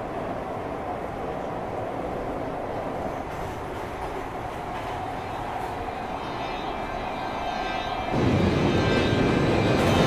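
Light-rail train running, heard from inside the car: a steady rumble with a faint held whine. About eight seconds in the sound turns suddenly louder and fuller.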